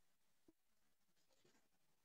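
Near silence: a muted gap in a video call, with a very faint tick about half a second in.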